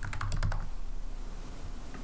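Computer keyboard typing: a quick run of about seven keystrokes in the first half second or so, the word "pricing" being typed into a search box.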